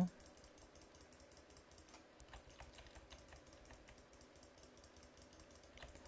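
Faint, rapid clicking of a computer mouse, many small clicks a second, as the burn tool is brushed over the image.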